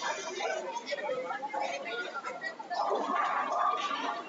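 Indistinct chatter of several people talking at once, with no single clear voice.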